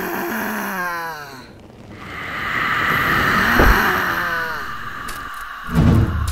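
A woman groaning, her voice falling in pitch twice, over a steady high drone, with a low thud near the end.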